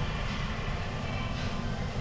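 Steady low rumble and din of a large indoor exhibition hall, with a few faint sustained tones over it.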